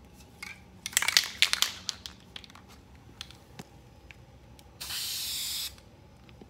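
Aerosol spray paint can giving one steady hiss of about a second near the end. Before it, about a second in, comes a short burst of clicking and rattling from handling.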